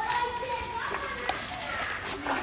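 Children's voices talking and calling out to each other, high-pitched, with a couple of small knocks.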